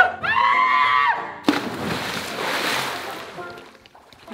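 A held, pitched note lasting about a second, then a person diving into a swimming pool: a splash about a second and a half in, and churning water that fades over about two seconds.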